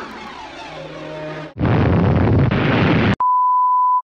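Edited cartoon sound effects. A descending whistle-like glide runs for about a second and a half, then a loud burst of noise like a crash, cut off near the end by a steady high electronic beep tone.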